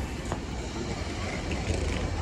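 Steady low rumble of a vehicle engine and road traffic, with a faint click about a third of a second in.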